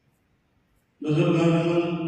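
A man's voice chanting in Arabic, holding one long, steady note that begins suddenly about a second in after a pause: the intoned recitation of a Friday sermon.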